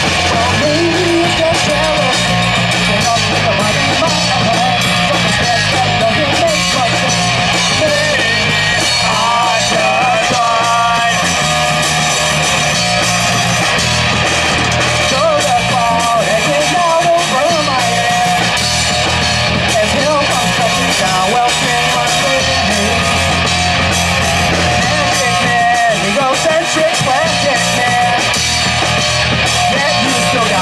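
A live rock trio playing a song: electric guitar, electric bass and a drum kit, steady and loud throughout.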